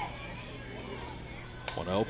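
Ballpark ambience of faint crowd chatter over a steady low hum, broken near the end by one sharp crack as a softball bat fouls off the pitch.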